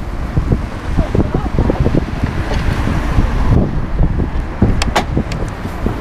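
Heavy, uneven rumble of wind and clothing rubbing on a handheld camera's microphone, with a few sharp clicks about five seconds in.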